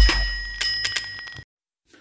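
Bell-ring sound effect of a subscribe-screen notification bell: a bright ring, struck again about half a second in, that cuts off suddenly about one and a half seconds in, over a low boom that fades away.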